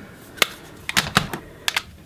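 Hard plastic eyeshadow palette cases clicking and clacking as they are handled, with lids flipped open and shut: about six sharp clicks, several bunched in the second half.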